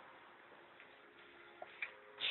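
Near silence: faint room tone, with two small clicks near the end.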